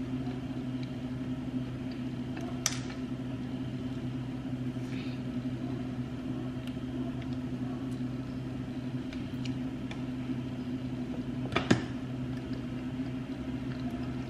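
A steady low electrical hum of room tone, with two brief clicks, one about three seconds in and one near the end.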